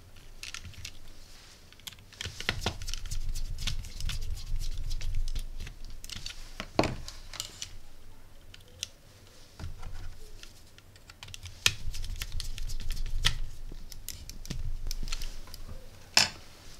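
Small irregular clicks and scrapes of a screwdriver turning the screws of a circuit board's screw terminal block as wires are fastened in, with soft handling bumps of the board and wires.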